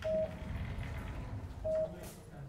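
Two short electronic beeps, each one steady tone, about a second and a half apart.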